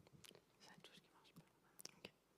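Near silence in a quiet room, with faint whispered speech and a few small clicks, the sharpest one near the end.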